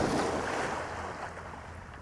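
A Labrador retriever splashing out through shallow pond water after a thrown dummy. The splashing fades steadily as the dog moves away.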